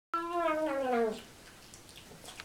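Siamese cat meowing while eating with its mouth full: one meow about a second long, falling in pitch, followed by faint clicks.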